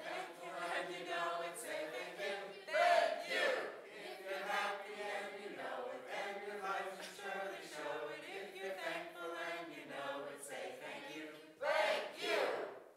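A group of voices singing together, with a louder swell about three seconds in.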